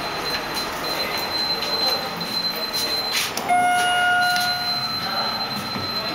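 Schindler elevator car in service, with a steady rumble and a thin high whine. A little past halfway a single electronic tone sounds for about a second.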